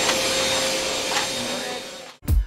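Drum-style canister vacuum cleaner running steadily as its hose nozzle is pushed across a hard floor, a continuous whirring hum with a faint steady whine in it, fading out near the end.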